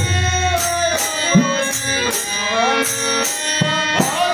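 Bengali devotional kirtan: men singing with a harmonium's held chords, a few deep khol drum strokes and a steady pattern of ringing hand cymbals (kartal).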